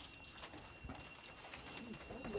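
Faint cooing of a dove.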